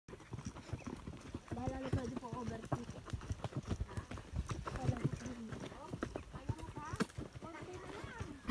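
Horse hooves clip-clopping at a walk on a dusty dirt trail, a steady run of uneven knocks, with voices talking now and then.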